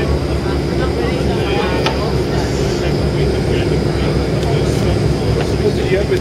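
Steady low engine rumble of a moving vehicle, heard from inside, with a steady high-pitched whine running over it and voices murmuring in the background.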